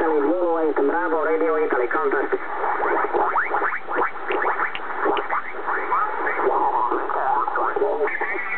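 Kenwood TS-690S HF transceiver receiving upper-sideband signals on the 10-metre band while being tuned across it: off-tune SSB voices slide up and down in pitch as the dial passes them, over steady band hiss, in narrow radio audio.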